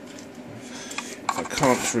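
A few faint clicks and light metallic clinks as the metal chassis and parts of a vintage hi-fi tuner are handled. A man's voice starts a little past halfway.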